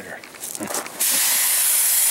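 Compressed-air paint spray gun spraying paint: a loud, steady hiss that starts suddenly about a second in.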